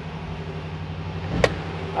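A 2022 Ram 1500's 5.7-litre Hemi V8 idling steadily just after starting, heard from inside the cab. A single sharp click comes about one and a half seconds in.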